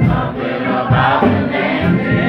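Gospel singing by several voices with organ accompaniment, continuing steadily.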